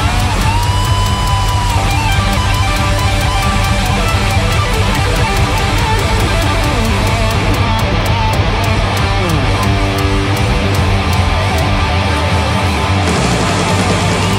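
Rock song in an instrumental passage without vocals: a full band with electric guitar playing steadily and loud.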